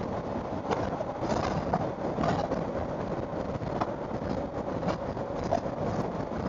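Suzuki V-Strom 1000 V-twin motorcycle cruising at a steady speed: an even, unbroken rush of wind and road noise with the engine running beneath it.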